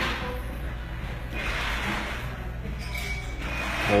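Haircutting scissors closing through a held section of hair, a soft rasping snip in the middle, over a steady low room hum.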